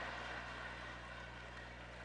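Room tone: a steady low electrical hum with faint hiss from the sound system, slowly fading.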